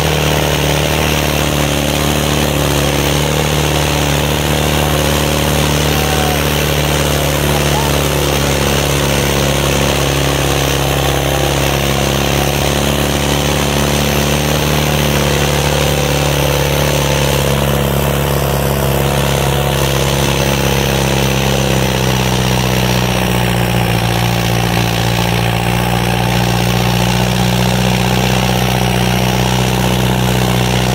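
Farmtrac 6055 tractor's diesel engine running steadily under heavy load as it drags two harrows through sandy ground. Its note shifts slightly about two-thirds of the way in.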